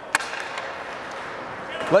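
A single sharp crack from hockey play on the ice, a puck or stick impact, just after the start, over steady indoor rink background noise.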